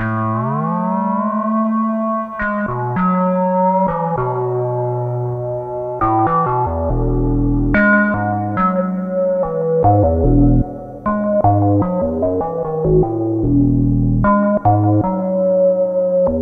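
Behringer DeepMind 12 analog synthesizer playing a soft, warbly, flute-like square-wave patch with a second oscillator added to thicken it. The first note slides up in pitch, a melody follows, and low bass notes join from about seven seconds in.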